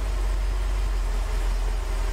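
Porsche 928S 5.0-litre 32-valve V8 idling steadily, just started after its automatic transmission was refilled with fresh fluid.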